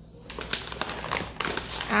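A thin plastic carrier bag and foil snack packets crinkling and rustling as a hand rummages through them. The sound is a run of irregular crackles that starts about a third of a second in.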